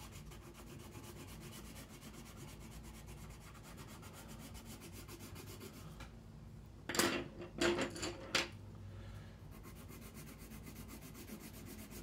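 Watercolor pencil scratching softly on paper as a patch of colour is shaded in. About seven seconds in comes a brief cluster of three or four louder knocks and rattles, and then the faint shading sound returns.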